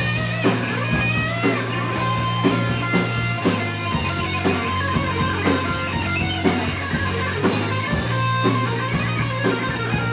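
Live rock band playing an instrumental passage: distorted electric guitars over sustained bass and drums keeping a steady beat of about two hits a second. A lead guitar bends notes upward near the start.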